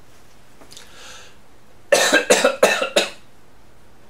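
A man coughing: a quick run of about five sharp coughs about two seconds in.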